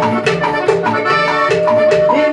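Live band playing Latin tropical dance music: an accordion melody over a bass line and a steady, quick percussion beat, with the accordion holding one long note from about halfway through.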